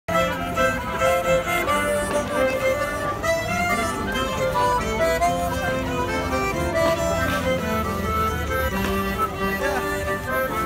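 Live folk dance band playing a mazurka for couple dancing: a melody line over held bass notes, steady throughout.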